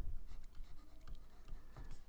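Faint, irregular scratching of a stylus on a tablet as a word is handwritten.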